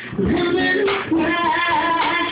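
A woman singing a song live to her own acoustic guitar.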